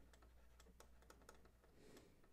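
Near silence, with a string of faint, irregular clicks and taps from a stylus writing on a pen tablet.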